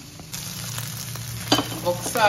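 A pot of pork and leafy greens cooking on the stove, with a steady hiss like sizzling or bubbling that starts a moment in. There are two light clicks near the end.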